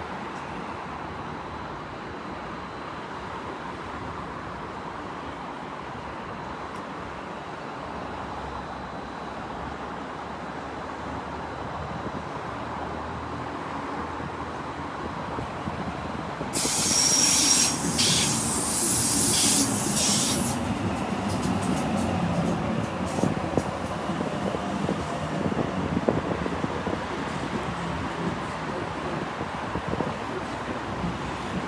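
A Sydney Trains Waratah (A set) electric train approaching and pulling into the platform, its running noise slowly growing louder. About 16 seconds in a loud hiss sets in for about four seconds, then the motors and wheels run on lower as the train slows.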